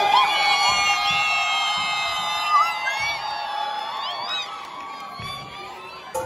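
Audience cheering and screaming, many high held whoops overlapping, dying down toward the end.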